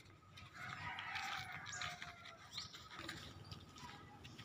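A rooster crowing once, faint, starting about half a second in and lasting around two seconds, over a low steady rumble.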